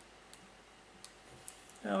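Quiet room tone with a few faint, short clicks scattered through it, then a man's voice starts again near the end.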